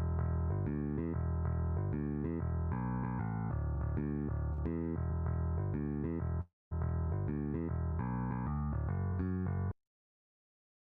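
Electric bass line played back solo from Guitar Pro notation software: a rock riff that leaves out many notes and reaches up to some higher notes. It breaks off briefly about six and a half seconds in, resumes, and stops just before the end.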